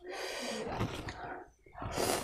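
Loud wet slurping at the mouth as curry-soaked pork belly is sucked in, lasting about a second and a half, then a bite into the meat near the end.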